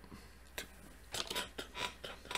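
A few faint short clicks and rustles of hands handling and tapping mobile phones, one about half a second in and a small cluster in the second half.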